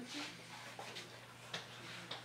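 Faint brushing and rubbing of a cloth towel over damp printmaking paper, blotting off the surface water, in a few short strokes with a sharper tap about one and a half seconds in.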